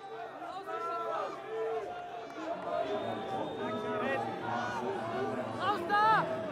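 Arena crowd voices: several people calling out at once over a background of chatter, with shouts rising and falling throughout.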